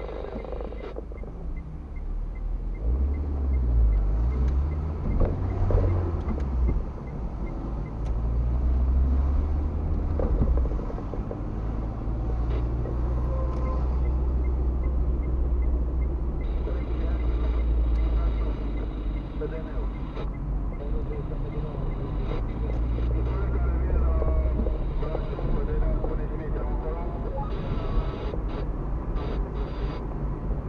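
Car engine and road noise heard from inside the cabin as the car pulls away and drives along a street. The engine note rises and falls in the first few seconds, then settles into a steady low rumble.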